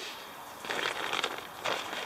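Crinkling rustle of a lightweight stuff sack, handled and pulled out of a backpack, mostly in the middle second.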